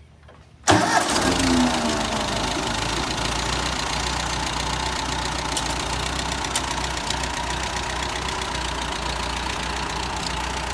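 Ford farm tractor's engine starting about a second in, its speed briefly high and falling away, then settling into a steady idle.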